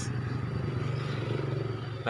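A small engine running at a steady speed, a low even drone.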